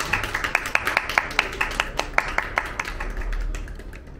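Small audience applauding, many separate hand claps that thin out and fade away near the end.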